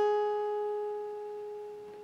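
A single guitar note on the high E string, held at the fourth fret (G sharp) after a slide up from the second fret, ringing on one pitch and slowly fading.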